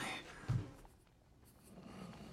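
A single short, low thud about half a second in, followed by quiet room tone.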